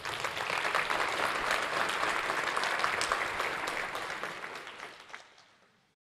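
Audience applauding, a dense patter of many hands clapping that thins out and dies away about five seconds in.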